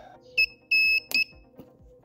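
Mini spot welder beeping three times in high pitch, a short beep, a longer beep, then a short beep joined by a sharp snap as the weld pulse fires through the nickel strip.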